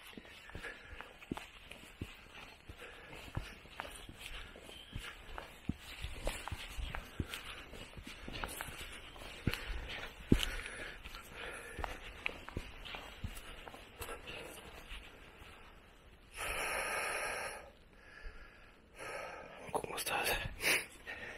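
A hiker's footsteps on a dirt forest path as he walks uphill, with his breathing; a loud breath of about a second and a half comes near the end, and a shorter one just after it.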